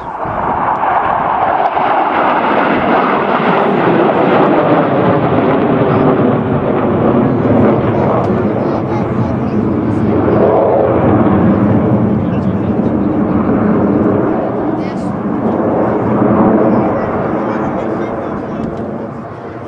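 Jet noise from a formation of MiG-29 fighters passing overhead, each with twin RD-33 turbofans. It is loud and steady, jumps up at the start, swells and eases in slow waves, and dies down near the end.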